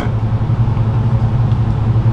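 A steady low hum, unchanging and fairly loud, with nothing else over it.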